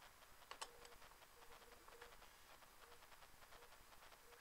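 Near silence: room tone, with a couple of faint clicks about half a second in.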